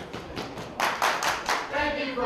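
A string of sharp hand claps, about six in under two seconds. Near the end, a cappella singing voices begin.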